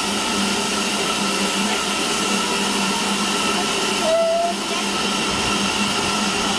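Steam hissing from a BR Standard Class 4 tank engine's cylinder drain cocks as it moves slowly alongside, over the steady drone of a diesel locomotive engine running close by. A brief high tone sounds about four seconds in.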